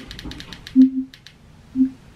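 Remote-control buttons clicking rapidly, with a short low electronic beep on some presses, three beeps in all, as the TV volume is stepped down towards mute.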